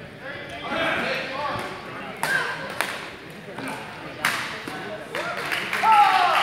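Badminton rackets smacking a shuttlecock, about four sharp strikes spaced roughly a second apart, echoing in a large sports hall. Voices are heard early on, and there is a loud shout right at the end.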